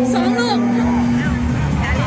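Crowd in an indoor sports arena: voices and chatter. A steady low droning tone is held under it and stops about one and a half seconds in.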